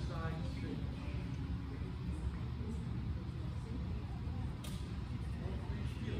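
Faint, distant voices in the first second over a steady low rumble of room noise, with a single sharp click about three-quarters of the way through.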